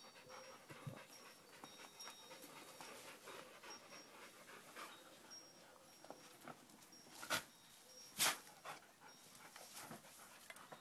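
A dog panting, faint and steady, with two sharp knocks about a second apart near the end.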